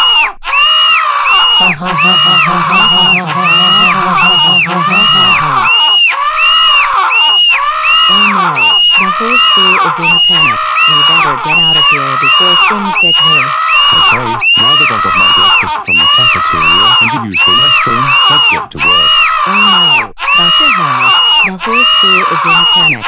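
A scream sound effect looped over and over: the same high shriek rises and falls a little over once a second throughout, like a panicked crowd screaming. A laugh comes in about four seconds in.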